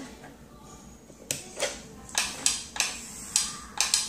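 Light, irregular clicks and knocks, about eight in the second half, from handling an electric nail drill: plugging a cord into the front of its control box and picking up the handpiece.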